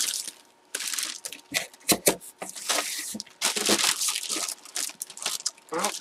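Clear plastic bag crinkling in irregular bursts as a packaged jersey is handled and turned over in it.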